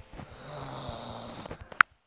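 A person snoring: one snore lasting about a second and a half, followed by a single sharp click near the end.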